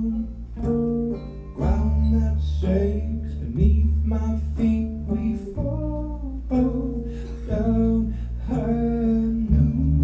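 Live acoustic folk song: a man singing over strummed acoustic guitar and banjo, with a steady low bass line under the chords.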